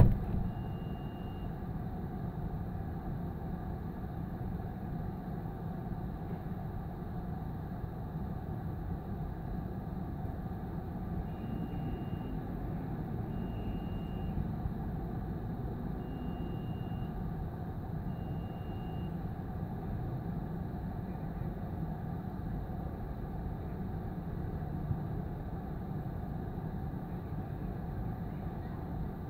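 A steady low rumble of a vehicle engine, with a short high-pitched beep about a second long heard five times: once near the start, then four more spaced about two seconds apart in the middle stretch.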